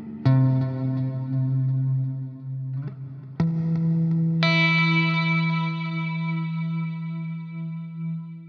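Electric guitar played through a TC Electronic Plethora X3 multi-effects pedalboard set with Hall of Fame 2 reverb and Flashback 2 delay: a note struck about a quarter second in, a lower-register change and a new strike around three and a half seconds in, and a brighter note added a second later, all ringing on with a long decaying tail.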